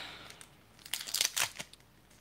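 Paper wrapper of a trading card pack crinkling and tearing as its glued back seam is peeled open by hand, a quick run of crackles about a second in.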